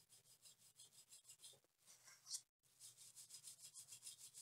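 Very faint, quick back-and-forth rubbing of a swab over a laptop motherboard, scrubbing sugary liquid residue with alcohol.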